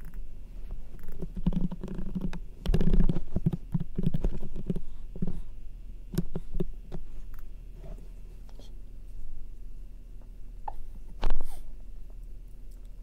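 Scattered computer mouse and keyboard clicks, busiest in the first five seconds, with low muffled rumbling sounds among them. A single sharper, louder knock comes near the end.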